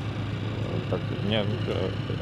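An engine runs steadily in the background with a low drone, and a man's voice briefly breaks in with a single word partway through.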